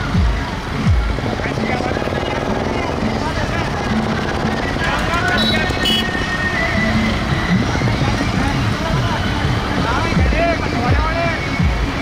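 Diesel tractor engines running in a slow column of tractors, with a low rumble throughout, mixed with voices and music.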